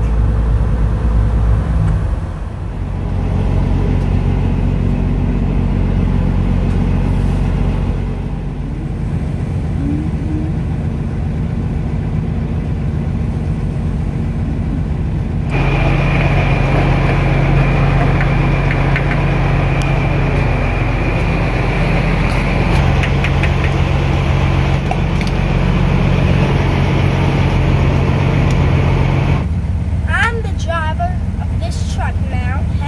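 A semi truck's diesel engine running steadily. About halfway through, the sound changes abruptly to fuel being pumped into the truck at a fuel pump: a rushing hiss with a steady high whine over the engine.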